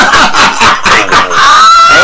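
Men laughing hard: a run of quick laugh bursts, then a long high-pitched squealing laugh from about a second and a half in.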